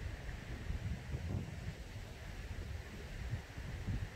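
Outdoor wind buffeting the microphone: an uneven, fluttering low rumble over a faint steady hiss.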